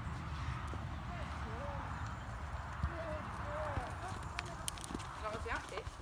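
Hoofbeats of a loose horse trotting and cantering around a sand round pen, soft scattered thuds on the footing over a steady low rumble.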